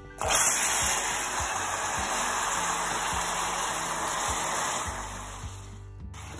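Water poured onto molten sugar in a hot pot: a sudden loud sizzling hiss as it boils up, fading gradually near the end. This is the water being added to make caramel syrup.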